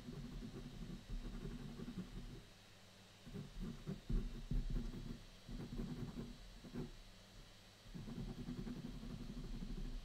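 White pen scribbling hatching strokes on toned paper, a dull scratchy rubbing in runs of one to two seconds with short pauses between.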